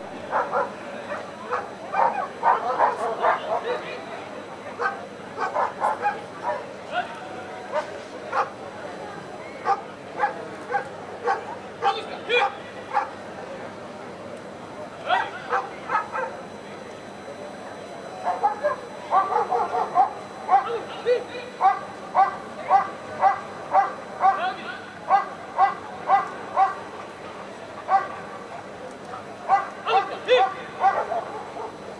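A dog barking repeatedly in runs of short barks, with a steady stretch of about two barks a second in the second half.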